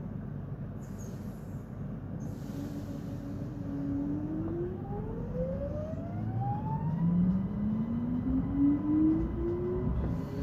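Inside an electric multiple-unit train pulling away from a standstill: the traction motors whine in a tone that climbs steadily in pitch from about four seconds in, with a second rising whine getting louder toward the end, over the low rumble of the running train. Two short hisses come near the start.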